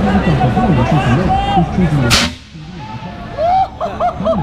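A handheld compressed-air launcher fires once about two seconds in: a single short, sharp blast of released air, over crowd chatter.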